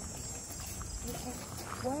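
Steady low room hum, then faint voices of people talking from about a second in, one voice growing louder near the end.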